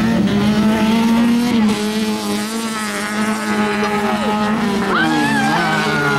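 Engines of several autocross race cars running hard, their notes rising and falling as they accelerate and lift, with one engine revving up sharply about five seconds in.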